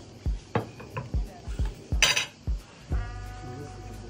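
Plates and cutlery clinking and knocking as food is set out on a table, over background music with a steady beat. There is a short noisy burst about halfway through.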